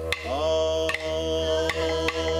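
Chant-like singing: a voice slides up into a long held note over a steady low drone, with a few sharp percussion strikes.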